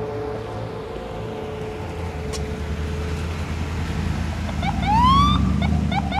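A police car's engine rumbles louder as it pulls up. About five seconds in comes one short rising siren whoop, followed by a few quick siren chirps at the end.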